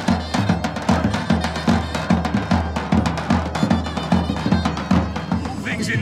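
Live folk dance music led by a large double-headed drum (dahol) beaten in a steady, repeating rhythm.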